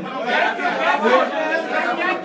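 Several people's voices talking over one another at once, with no instruments playing.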